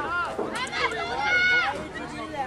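Players and people on the sideline shouting across the field in raised, high voices, with one long drawn-out shout just past the middle; a short sharp knock right at the start.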